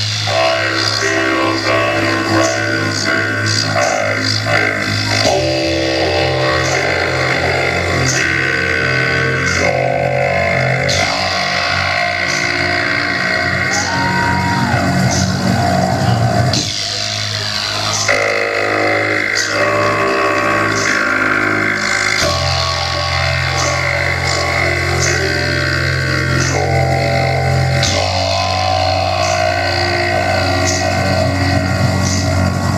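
Live rock band playing loudly: held electric guitar and bass chords that change every five or six seconds over a steady drum beat with regular cymbal hits.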